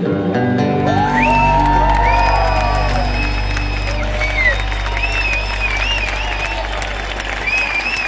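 Live band music held on a sustained low drone at the close of a song, with the crowd cheering and applauding over it.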